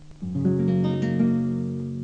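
Acoustic guitar accompaniment: a chord is strummed about a quarter second in and left to ring.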